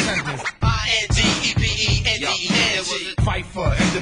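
Hip hop music: a steady drum beat with rapped vocals over it.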